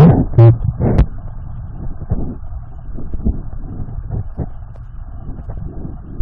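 Underwater river sound picked up by a submerged camera: a steady muffled rush with many small scattered clicks and knocks. In the first second there is a short, muffled pitched sound from a person trying to speak underwater.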